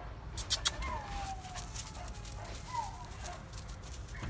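Dog whining softly twice, a drawn-out falling whine about a second in and a short one near three seconds, with a few sharp clicks in the first second.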